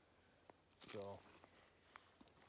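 Near silence with one short spoken word, "so," about a second in, and two faint clicks, one before it and one near the end.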